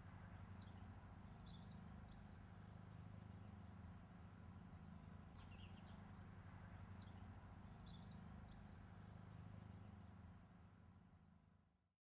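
Faint night-time ambience of high chirping calls, the same phrase coming round again about every five and a half seconds, over a steady low hum; it fades out near the end.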